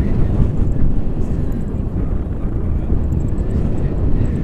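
Wind rushing over the microphone of a camera flying with a paraglider: a steady low rumble of buffeting air.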